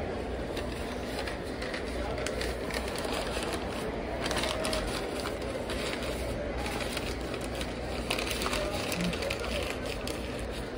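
Brown kraft paper rustling and crinkling in irregular bursts as a stainless-steel mug is wrapped in it. Underneath runs a steady background hum with faint voices.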